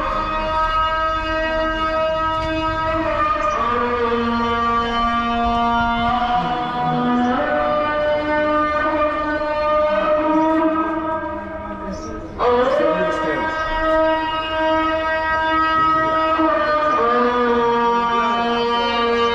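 Islamic call to prayer (adhan) sung by a muezzin over a mosque loudspeaker: a man's voice drawing out long held phrases, each rising into its note, with a short pause and a new rising phrase about twelve seconds in.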